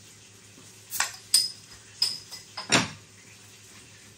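Metal bottle opener levering the crown cap off a glass beer bottle: a few sharp metallic clicks and clinks over about two seconds, two of them with a brief high ring.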